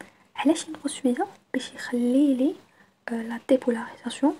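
Speech only: a voice talking in short phrases with brief pauses.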